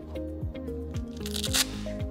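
Background music with a steady beat. About one and a half seconds in comes a short, rasping rip: a hook-and-loop (Velcro) strap being pulled and fastened on a hockey elbow pad.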